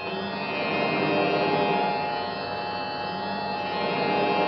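Musical score accompanying a silent film: sustained, held chords with a gentle swell in loudness about a second in.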